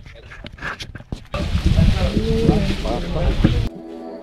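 Voices of a group talking: faint at first, then from about a second in loud over a heavy low rumble, which cuts off suddenly shortly before the end.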